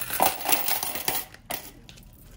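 Loose coins poured from a clear plastic pouch into a small cardboard box already holding coins: a jingling clatter for about the first second, then two or three single clinks as the last coins drop.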